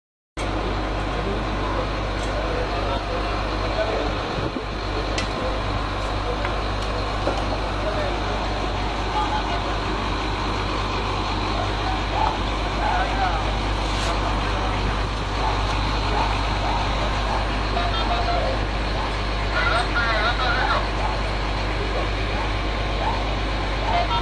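Steady low rumble of an idling vehicle engine, with people's voices faintly underneath.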